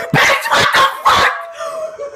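A dog barking and yelping in about five quick, short bursts.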